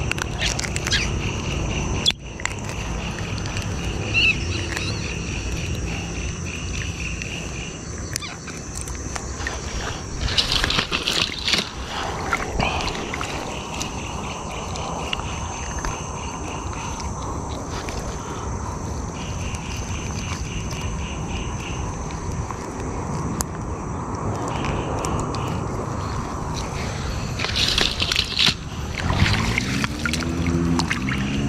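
Water sloshing and a fishing net being handled at the edge of a flooded river, over a steady low rumble, with a pulsing high trill that comes and goes in stretches and a couple of short bursts of rustling and splashing.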